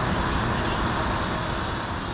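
Steady road traffic noise from the highway, a vehicle's tyre and engine rumble with a hiss over it.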